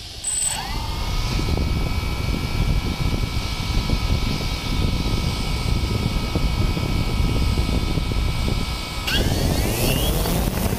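Quadcopter drone's motors starting up after a short high beep, spinning steadily with a high whine, then rising in pitch near the end as the drone throttles up to take off. A rumble of propeller wash on the microphone sits under the whine.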